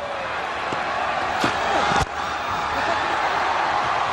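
Steady stadium crowd noise, with one sharp crack of a cricket bat striking the ball about two seconds in, as a yorker is dug out.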